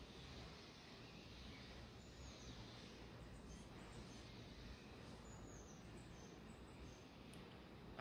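Near silence: faint steady room tone with a few faint, short, high chirps of distant birds.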